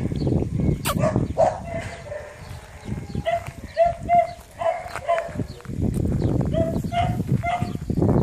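A dog whimpering in short, repeated high whines that come in clusters with a pause in the middle. A steady scuffing, like paws or feet on gravel and dry grass, sets in during the last couple of seconds.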